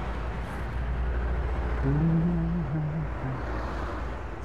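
Steady low rumble of street traffic, with a short, level pitched drone about halfway through that lasts roughly a second.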